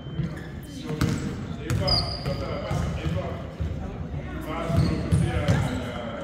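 A basketball bouncing on a hardwood gym floor, several irregular thuds, with voices of players and spectators echoing in the gym.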